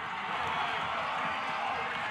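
Football crowd cheering and clapping, a steady wash of crowd noise.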